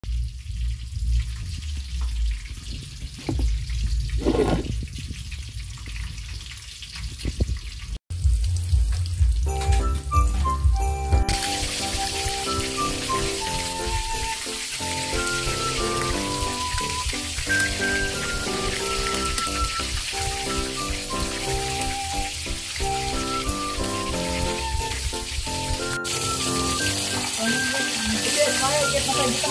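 Battered chicken pieces frying in hot oil in a wok, a steady sizzle from about eleven seconds in, under background music with a simple stepping melody. The first several seconds hold only a low rumble with a few soft knocks.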